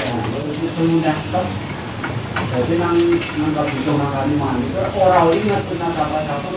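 Mostly an indistinct voice, with a few light clicks from hands handling a small plastic desk fan.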